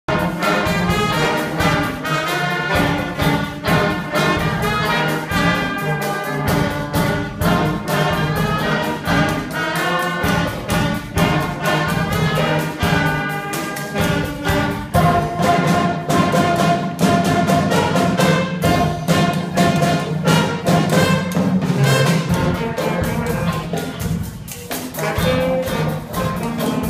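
Student jazz band playing live: saxophones and trumpet over a Ludwig drum kit keeping a steady beat. The horn parts change about halfway through, with a long held note.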